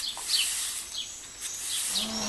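A few short, falling bird chirps over a faint steady hiss.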